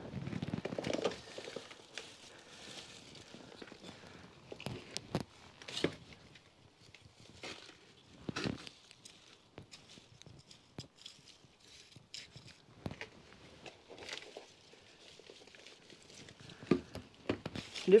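Hand trowel digging into loose compost, with scattered scrapes, crackles and rustles as lettuce seedlings are pulled from a plastic tray and set into the bed.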